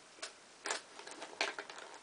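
Light clicks and taps of makeup brushes and small cases being handled while a brush is picked out: three clearer clicks spread across two seconds, with fainter ticks between.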